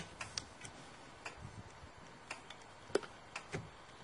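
Windshield wiper blade being worked onto its wiper arm: a sharp click at the start, then scattered faint clicks and ticks as the blade is pulled forward and slid into place.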